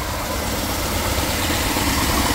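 BMW X6 E70 engine idling steadily with the AC switched on. The electric cooling fan, which should run once the AC compressor engages, is not coming on properly, which the mechanic takes for a problem with the fan.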